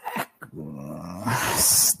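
A man's low, drawn-out groan-like sound that runs into a loud hissing breath close to the microphone.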